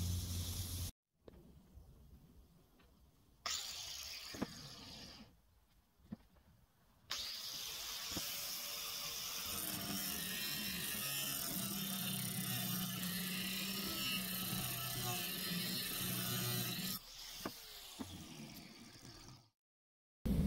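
Electric angle grinder with its disc cutting into a groove in a bent steel plate, running steadily for about ten seconds in the middle, re-opening the groove so weld can be fed into it. Before it come a few short clicks and knocks.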